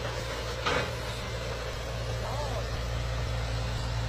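Hitachi excavator's diesel engine running steadily with a low hum as the machine crawls down a steep sandy slope on its tracks.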